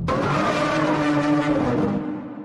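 Car engine sound effect that cuts in suddenly and holds a loud, steady engine note.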